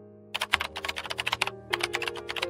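Background music with long held notes. From about a third of a second in, a rapid, irregular run of clicks like keyboard typing joins it.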